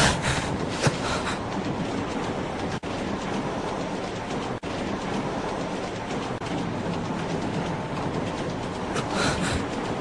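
A steady, dense rushing noise with no clear pitch, cut off twice for an instant early on.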